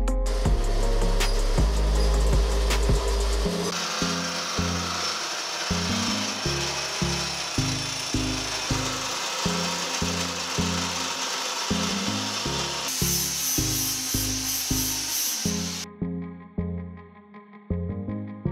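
Montage music with a stepping bass line over a hole saw notcher cutting steel tube: a steady grinding rasp that turns brighter and higher late on, then stops abruptly about sixteen seconds in. A few light clicks come before the cutting starts.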